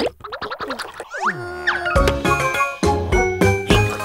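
Cartoon sound effects: quick sliding glides in pitch, falling and then rising, for about the first two seconds. About halfway through, an instrumental children's-song intro with a steady beat starts.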